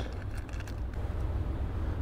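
A steady low rumble with faint even noise above it, and no distinct events.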